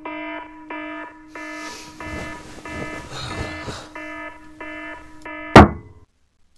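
Digital alarm clock beeping, a pitched beep repeating about one and a half times a second, with some rustling in the middle. Near the end a hand slams down on the clock with a loud smack, and the beeping stops.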